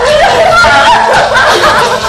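Women wailing and sobbing in high, wavering cries.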